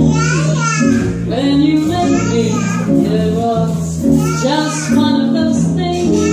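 Live jazz trio: a woman singing into a microphone over jazz guitar and upright double bass.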